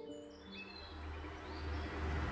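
Faint, short cartoon bird chirps over a low rumble that swells in the second half as a car drives up. The last held notes of the background music fade out at the start.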